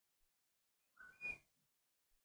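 Near silence, broken once, a little after a second in, by a brief faint hiss with a thin whistle in it.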